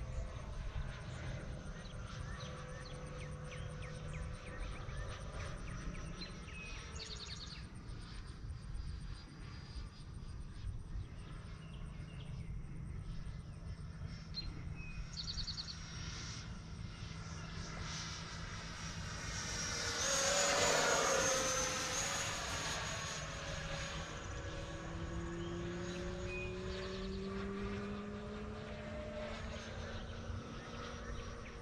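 Electric ducted fan of an E-flite F-16 Thunderbird 70 mm RC jet, whining as the model flies around the field. It makes a louder pass about twenty seconds in, its pitch dropping as it goes by.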